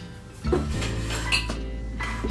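Glass storage jars and kitchenware clinking and knocking as they are set on a cupboard shelf, with a sharp clink about half a second in and another just after one second in, over background music.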